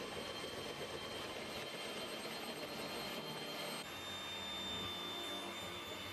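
Electric hand mixer running steadily, its beaters whipping a shea butter and oil body-cream mixture in a bowl, with a constant high motor whine. The whine shifts a little in pitch about four seconds in.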